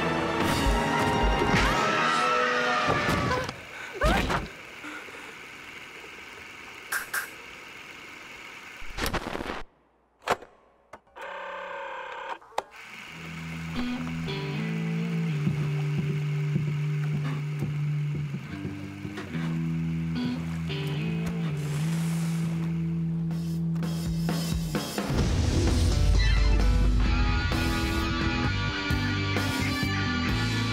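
Film score with sound effects: a busy passage with a sudden hit about four seconds in, a brief near-silent break, then music built on long held bass notes. Near the end a deep, loud boom of an explosion comes in under the music.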